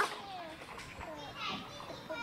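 Background chatter and calls of young children playing, quieter than a close voice.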